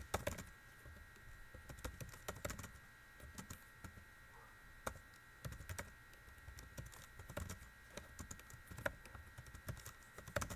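Computer keyboard typing: irregular runs of quiet key clicks, over a faint steady high-pitched whine.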